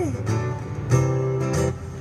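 Acoustic guitar strumming chords between sung lines. A woman's held sung note slides down and stops just as the strumming takes over.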